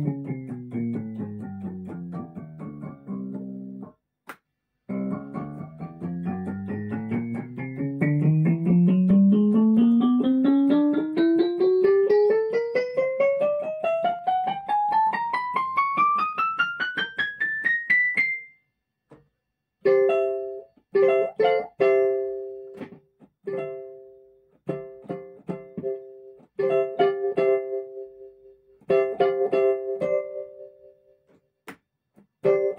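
Weltmeister Claviset 200 electric keyboard being played: a run of notes falling in pitch, then after a short break a long run climbing steadily up the keyboard for about thirteen seconds. After a brief pause come short, detached chords struck repeatedly in the middle register.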